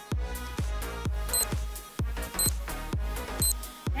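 Electronic dance music with a kick drum about twice a second. Three short, high electronic beeps a second apart mark the last seconds of a workout interval timer.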